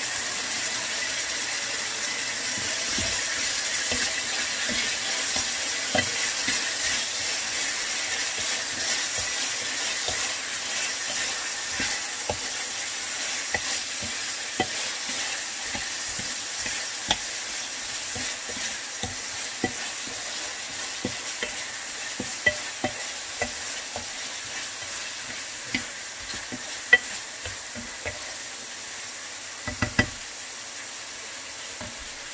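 Beef and sliced onions sizzling in a nonstick skillet, a steady frying hiss that slowly fades. A wooden spoon stirring and scraping the pan gives scattered short knocks throughout.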